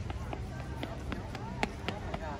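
A small child's footsteps running on paved concrete, quick light steps about four a second, over a low outdoor background hum.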